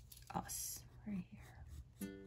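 A soft, quiet whisper of a woman's voice, with a brief click about a third of a second in.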